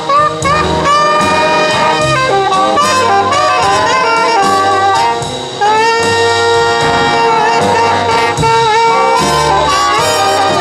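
Big-band jazz: an alto saxophone solo with sliding, bent notes over trumpets, trombones and the rhythm section. About five and a half seconds in the sound dips briefly, then a long note is held.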